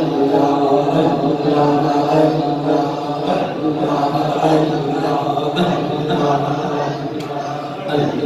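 Men's voices chanting together in a devotional group chant, held and rhythmic, with no break.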